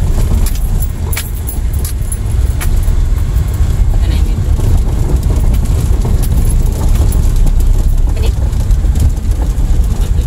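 Car driving slowly over an unpaved dirt road, heard from inside the cabin: a steady low rumble with scattered clicks and rattles as it goes over the bumps.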